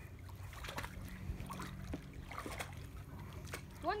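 A dog wading in shallow lake water, its legs making small, scattered splashes and sloshes, over a steady low hum.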